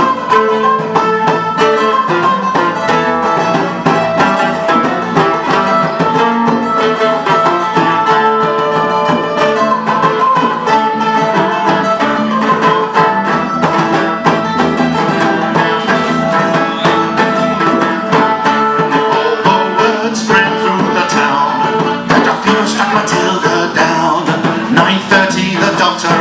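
Live folk band playing: strummed guitars and a fiddle over a hand drum.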